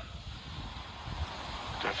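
Steady low background hiss of the broadcast's ambient noise, even and without distinct events, during a pause in the commentary.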